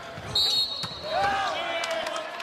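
Volleyball rally on a hardwood court: a high, brief sneaker squeak and a few sharp knocks of the ball being played, over steady arena crowd noise.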